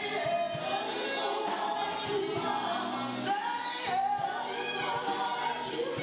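A choir of several voices singing live in sustained, sliding phrases over instrumental accompaniment.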